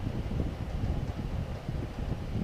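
Steady low rumbling noise with no distinct events, like moving air or handling noise on the microphone.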